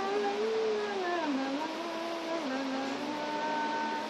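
A voice humming a slow tune in long held notes that glide from one pitch to the next.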